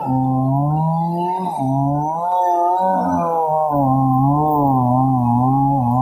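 Petrol chainsaw cutting lengthwise through a log, its engine pitch wavering up and down as the load on the chain changes.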